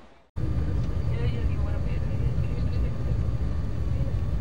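Steady low rumble of a moving vehicle, starting suddenly about a third of a second in, with faint voices in it.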